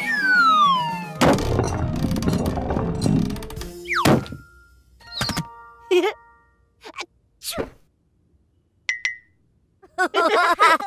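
Cartoon sound effects: a whistle sliding down in pitch, then a thunk about a second in, followed by a rumbling clatter. A quick falling swish comes near four seconds, then a scatter of short dings and whooshes, ending in a single ding near the end.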